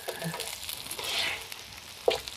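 Corn fritters sizzling in shallow oil in a nonstick electric skillet, with small clicks and scrapes from a plastic spatula working the pan. The sizzle swells louder for a moment about a second in.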